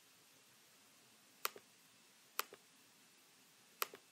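Three computer mouse clicks, each a sharp press followed closely by a softer release.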